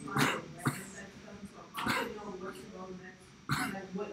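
Faint, indistinct talk with a few short coughs and throat-clearing sounds.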